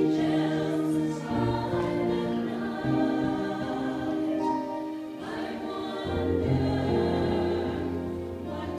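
Mixed church choir singing a slow Christmas song in long, held chords. A deep low note enters about six seconds in.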